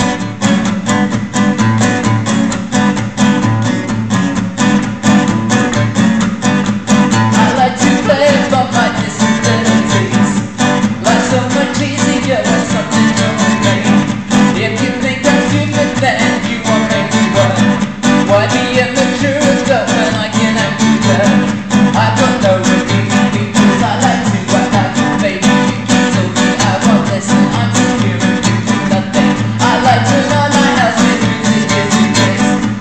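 Acoustic guitar strummed in a steady reggae rhythm, starting abruptly at the start, with a man singing over it.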